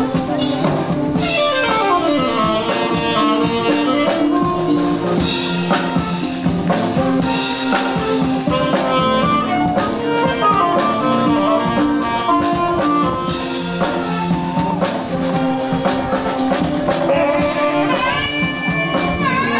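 High school concert band playing: clarinets and saxophones carry sustained chords and sweeping runs of notes over a drum kit keeping the beat.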